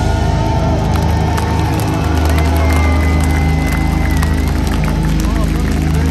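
Live metal band's guitars and bass ringing out in a sustained chord with no beat, while a festival crowd cheers and shouts over it. A high held tone, like a whistle, sounds briefly in the middle.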